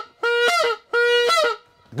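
Goose honking: a run of loud, steady honks, each about half a second long and dropping in pitch at its end, two full honks after the tail of a first.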